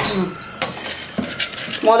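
Soaked moong dal being scooped by hand and dropped into a stainless steel mixer-grinder jar: a wet rustle with a few sharp clinks of fingers and bangle against the steel. A voice starts just before the end.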